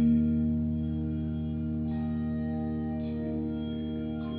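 Bronze handbell ensemble ringing a low, sustained chord that is struck together and left to ring, slowly fading, with a few higher notes added about two and three seconds in.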